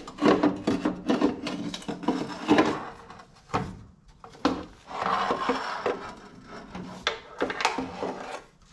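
Wooden blocks knocking and clattering as they are pulled away, then a metal oil pan scraping and rubbing against the frame as it is worked down and out from under an engine. The knocks are irregular, with a longer scrape about five seconds in.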